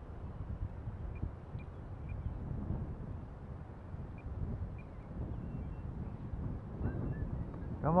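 Wind rumbling and buffeting on the microphone in an open field, with a few faint short high chirps in the first half.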